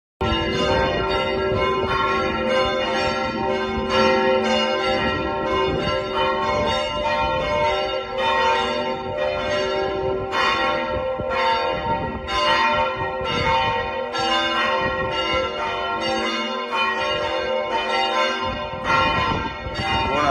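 Church bells pealing: several bells struck over and over, about two strokes a second, their tones ringing on and overlapping. The ringing starts abruptly.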